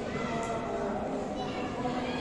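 Crowd chatter: many people's voices overlapping, with no single voice standing out.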